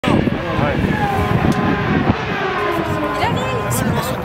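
Chatter of voices over a racing car's engine sounding in the distance, its pitch falling slowly.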